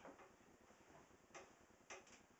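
Near silence with three faint, short clicks: one at the start and two in the last second.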